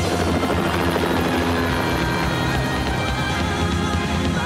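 A steady mechanical drone, with music underneath.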